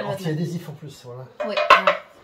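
Removable waffle-maker plates knocking and clattering against each other as they are handled and stacked, a short burst of clinks near the end.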